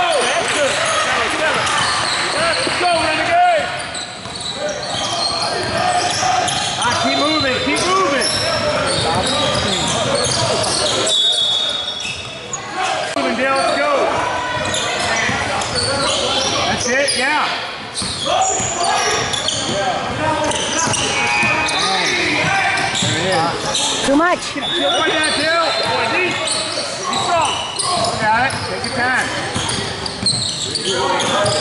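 Basketball bouncing on a hardwood gym floor as players dribble, with spectators' voices talking and calling out throughout, echoing in a large gym.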